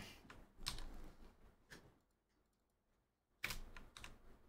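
Computer keyboard typing: a run of scattered keystrokes, a pause of about a second and a half, then more keystrokes near the end.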